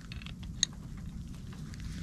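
Wrench and brass propane fitting handled together, giving a few faint ticks and one sharp metallic click about half a second in, over a low steady background rumble.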